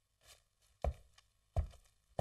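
Slow, heavy footsteps on a hard floor: a faint step, then two loud thudding steps about 0.7 s apart, with the rhythm carrying on.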